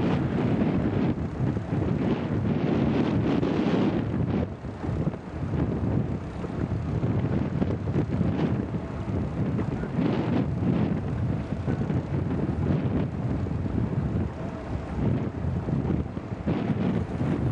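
Wind buffeting the microphone aboard a sailing E scow, a gusty rushing noise with water sounds under it, easing briefly a little after four seconds in.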